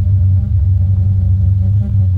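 A loud, steady low hum with several fainter held tones above it, unchanging throughout: a sustained drone on the drama's soundtrack.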